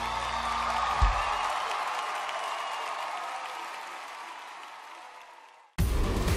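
Studio audience applauding and cheering at the end of a song. The applause fades out, with a low thump about a second in. Just before the end, loud theme music cuts in abruptly.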